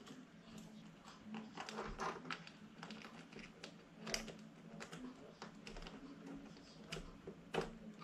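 Faint, irregular small clicks and taps of hands handling small screws and steering-link parts on an RC car chassis, with screws being started by hand.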